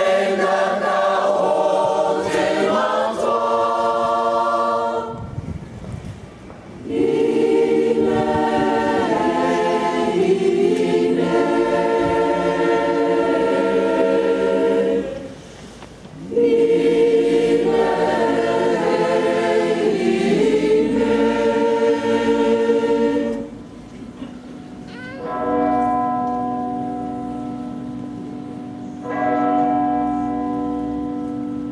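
Unaccompanied choir singing a slow piece in long chordal phrases separated by short breaths. Near the end the singing stops and a bell rings, its tone slowly fading, then struck again.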